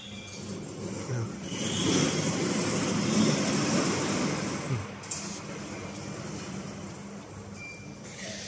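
Workshop machinery: a steady low hum, with a louder rumbling noise that swells up about a second and a half in and dies away after about three seconds.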